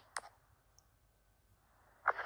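Two short clicks in quick succession, then near silence.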